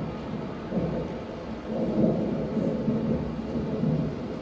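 Low, thunder-like rumble in a dance performance's recorded soundtrack, swelling and ebbing in waves.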